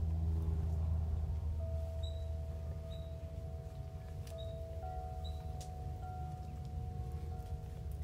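Soft chime-like ringing tones, each held for a long time, with a new tone starting every second or two, over a low rumble that eases after the first couple of seconds. A few short, high chirps sound now and then.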